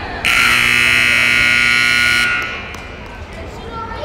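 Indoor arena scoreboard buzzer sounding as the game clock runs out to zero. It is a loud, steady, harsh tone that starts abruptly and cuts off after about two seconds.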